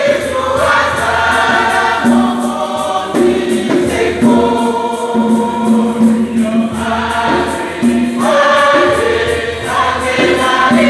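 A church choir, mostly women's voices, singing a hymn together, with long held notes.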